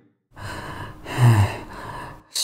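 A person gasping for breath: a long, rasping, breathy exhale with a short low groan about a second in, the laboured breathing of someone badly hurt.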